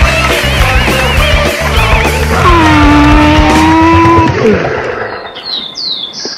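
Rock music with a steady beat. About two seconds in, a long held tone slides down into place and holds for about two seconds, then drops away. The music then fades out over the last second or so, and a few faint high sweeping tones come in near the end.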